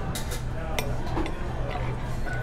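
Metal cutlery clinking against china plates and a metal bowl, a few sharp clinks in the first second, over a steady low background hum.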